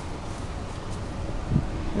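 Steady low rumble and hiss of wind on the microphone, over the idling V8 of a 2005 Ford F-150.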